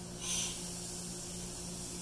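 A short hiss of compressed air from a pressure pot's relief valve about a quarter second in, as the pot sits at the valve's 55 psi limit, over a faint steady low hum.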